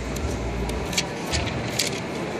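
A microfibre cloth rubbed over a phone's glass screen in short strokes, giving several brief, sharp swishes. A steady low rumble runs underneath.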